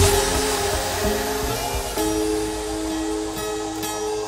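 Progressive trance music in a breakdown: the kick drum and bass drop out, leaving held synth chords under a fading cymbal wash, with a chord change about halfway through.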